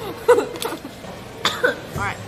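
A woman coughing a few short, sharp times, in two pairs of bursts.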